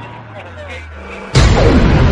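Logo-sting sound effect: a low held tone under fading music, then a sudden loud boom-like impact about a second and a half in, followed by falling tones.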